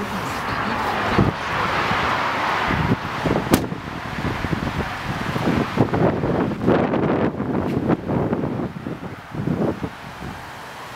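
Wind buffeting the handheld camera's microphone, with handling noise and irregular thumps as the camera is carried out of the truck, and one sharp knock about three and a half seconds in.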